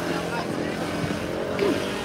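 Street traffic: a motor vehicle engine running with a steady hum, over the voices of a crowd on the sidewalk.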